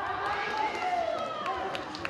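Several voices shouting at once in a large hall. They break out suddenly, with calls that fall in pitch, and ease off over about two seconds as a taekwondo exchange scores three points.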